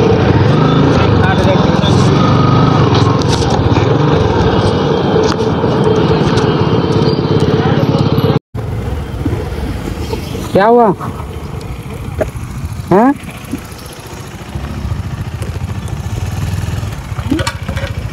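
Motorcycle engine running while riding, with heavy wind noise on the microphone; after an abrupt break about halfway through, a quieter engine rumble continues and a person calls out twice in short rising-and-falling shouts.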